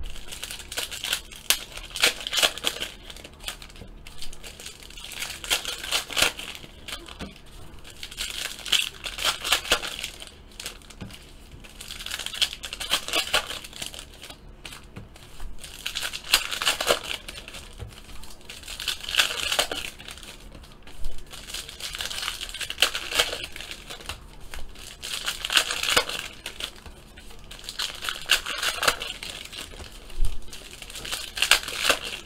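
Foil trading-card pack wrappers crinkling and cards being handled and flipped through, in crackly bursts a few seconds apart.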